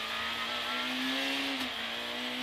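Peugeot 106 A6 rally car's engine heard from inside the cockpit, running at steady load with its pitch rising slowly, then dipping sharply about one and a half seconds in before climbing again.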